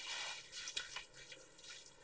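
Faint handling noise with a soft squish and a couple of small ticks in the first second, fading to near quiet.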